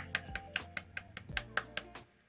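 One person clapping hands rapidly, about six or seven claps a second, stopping near the end, over background music.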